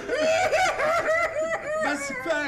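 A person's voice in a run of short, high-pitched, rhythmic bursts, about four a second, between laughing and sobbing, during an emotional embrace.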